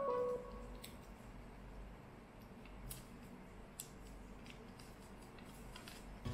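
Faint clicks and light handling of sticky tape being pulled and torn from a desktop tape dispenser while straws are taped to a card loop, a few separate clicks about a second apart. A short run of falling music notes ends about half a second in.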